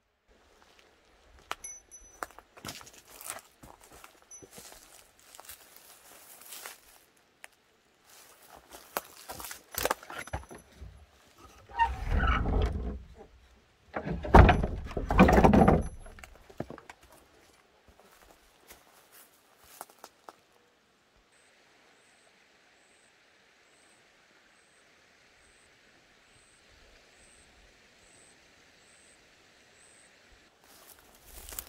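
Light clinks and knocks from an old wooden door with an iron ring latch being handled, then two louder rough, rumbling noises, each a second or two long, about twelve and fourteen seconds in. A faint steady hiss follows.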